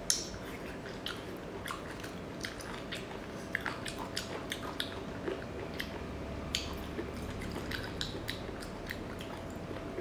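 Close-miked eating sounds: chewing and biting into soft seafood, with wet mouth smacks and small sharp clicks at irregular intervals, the strongest right at the start.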